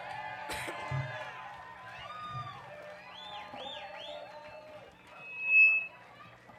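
Concert audience cheering and whooping as a live song ends, over a soft held note from the band's instruments. About five seconds in comes a short, loud, steady high whistle.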